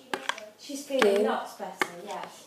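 A metal spoon clinking and scraping in a small glass bowl as a soap mixture is stirred, with a few sharp clinks. A voice is heard briefly in the middle.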